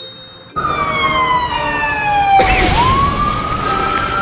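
Ambulance siren wailing: its pitch falls slowly for about two seconds, then climbs back up. A loud rushing burst of noise comes about halfway through, and a ringing tone fades out in the first half second.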